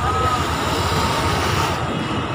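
Steady engine and road noise of a passing motor vehicle.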